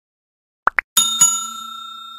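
Two short click sounds, then a bell struck twice in quick succession, ringing and fading over about a second and a half: the click-and-bell sound effect of a subscribe-button animation.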